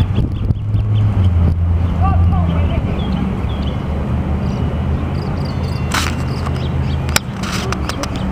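Steady low hum of a Newark Light Rail car, with voices murmuring faintly and two short sharp knocks near the end.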